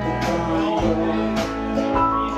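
Live band playing a country number, with electric guitar notes ringing over the band and sharp hits about once a second.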